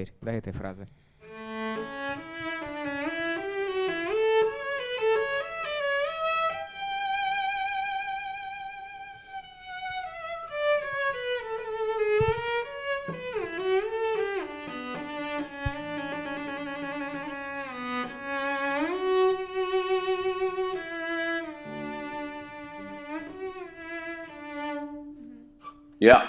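Solo cello played with the bow: a slow melodic phrase of sustained notes, each held note with a wide, even vibrato, and a long held note a few seconds in. The vibrato is used on every main note as a practice exercise.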